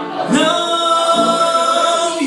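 A man singing over a backing track, holding one long steady note from about a third of a second in.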